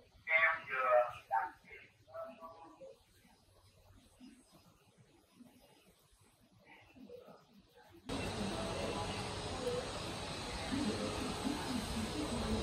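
A man's low muttering, then near silence; about eight seconds in, a steady hiss with a low hum starts abruptly from the stereo system once the AV cable is connected, before any music plays.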